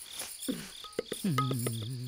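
Crickets chirping in an even rhythm, about three chirps a second. In the second half a low held tone comes in, with a few sharp clicks.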